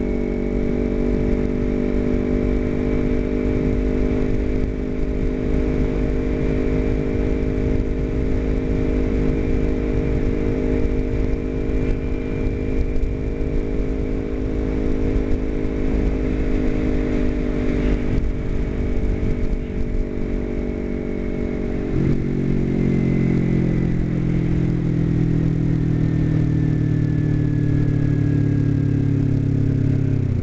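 Kawasaki Ninja 250R parallel-twin engine running at a steady cruise over wind rush for about twenty seconds. The engine note then changes suddenly and falls steadily as the bike slows on approach to a stop.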